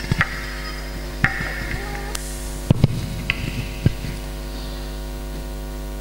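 Steady mains hum from a public-address system, with a few scattered clicks and knocks.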